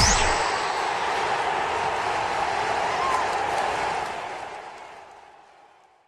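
Outro sound effect under an end card: a dense rushing noise with a faint steady high tone, the tail of a rising whoosh. It holds steady, then fades away over the last two seconds.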